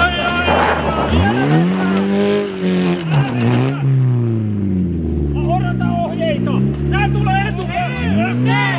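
Opel Astra rally car's engine revving hard on snow, pitch climbing and dropping through the corner. After a cut, the engine revs again with the wheels spinning as the car sits stuck in a snowbank, with people shouting over it.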